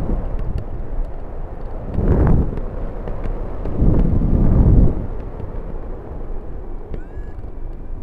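Wind rushing over a microphone on a gliding hang glider's keel tube, a steady rumble that swells in gusts about two seconds in and again around four to five seconds.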